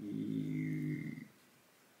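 A man's wordless, drawn-out groan held at one low pitch for just over a second, then cut off.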